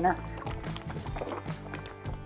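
Background music over a plastic bottle of liquid polishing cleaner being shaken by hand, the liquid sloshing inside.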